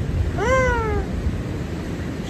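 A high voice calls out once, the pitch jumping up and then sliding down over about half a second, over a steady low rumble.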